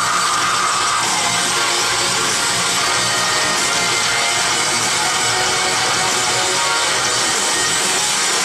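Live melodic death metal band playing loud distorted electric guitars over drums, heard from within the crowd as a dense, saturated wall of sound. A held high note ends about a second in.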